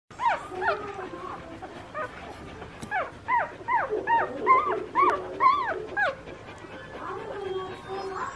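Newborn rough collie puppies, two days old, squeaking and whimpering at the teats: a quick series of about a dozen short, high cries that rise and fall, stopping about six seconds in.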